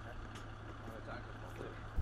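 Faint, steady low hum of a truck engine idling, over light outdoor background noise.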